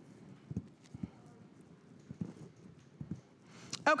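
Faint footsteps on a hard studio floor: soft knocks roughly twice a second in an otherwise quiet room.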